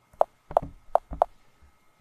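Four quick taps on a tablet's on-screen keyboard typing the four letters of "task", each a short sharp click with a brief pause between.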